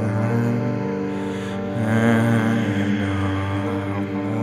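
Slow, dark improvised piano music with long held low notes and chords that ring on together like a drone, new low notes entering a little under two seconds in.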